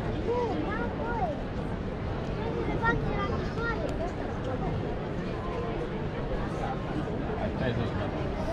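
Crowd hubbub: many people talking at once in a large open-air crowd, with no single voice standing out, over a steady low rumble.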